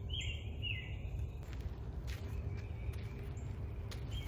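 A songbird gives two short high calls in the first second, then fainter calls later, over a steady low outdoor rumble.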